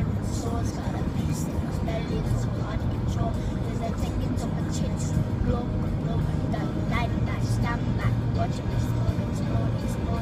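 A boy singing along to a pop song playing on the car stereo, over the steady road noise of a moving car's cabin.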